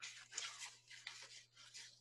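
Faint, irregular rustling of paper as a page is turned over, with a few small handling clicks over a low steady hum.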